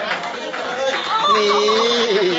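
Brief talk, then from about a second in a person's long drawn-out vocal cry, held at one pitch with a slight waver, from someone having a leg stretch pulled during a Thai bodywork treatment.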